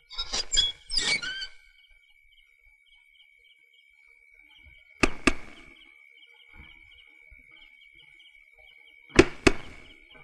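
An iron gate clanks a few times near the start. Then come knocks on a wooden door, two quick knocks about halfway through and two more near the end. Crickets chirp steadily underneath.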